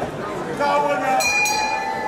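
Crowd chatter in a hall with a man's voice, and a short, bright metallic ring a little past a second in.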